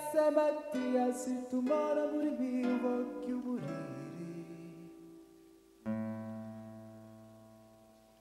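Nylon-string classical guitar played solo, picked chords ringing and fading, with a man's voice singing at the start. About six seconds in, one last chord is struck and left to die away.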